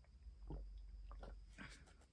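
Faint gulps of someone drinking from a water bottle: a few soft swallows over a low rumble.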